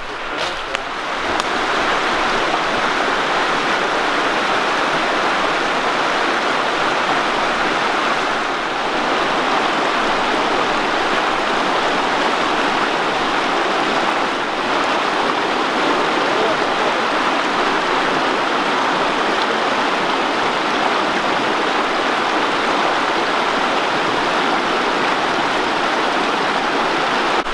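Fast-running, rocky river rushing over stones: a steady, loud rush of water that comes up about a second in and holds unchanged.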